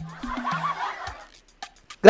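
Brief laughter that fades out after about a second, over a faint background music bed.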